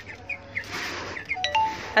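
Dry chicken feed rustling as a hand stirs it around in a plastic basin, with young chicks peeping. Near the end come a few short, clear, steady tones.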